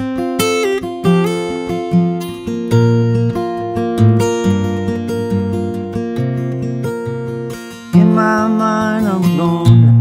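Steel-string acoustic guitar fingerpicked, capoed at the third fret with D-shape chord fingering, so it sounds in F. Bass notes and treble notes ring together, with a stronger accent near the end.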